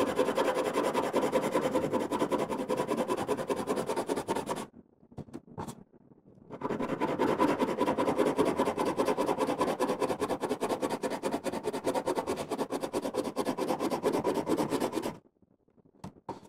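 Colored pencil scribbling rapidly back and forth on paper, a dense scratchy rasp. It stops for about two seconds a third of the way in, with one short tap, then starts again and stops shortly before the end.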